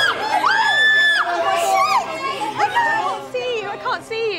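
Several people screaming in fright, long high-pitched screams overlapping one another, with shrieks and exclamations that die down near the end.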